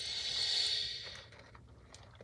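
A person sipping soda through a plastic straw: one breathy hiss lasting about a second, loudest about half a second in.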